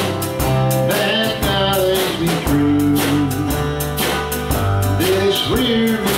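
Country gospel band playing live: strummed acoustic guitar and electric bass over a steady beat, with a melody line that slides between notes.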